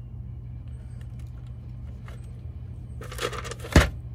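Stones rattling and clacking in a plastic tub as a hand digs into it, about three seconds in, ending in one loud sharp clack, over a steady low hum.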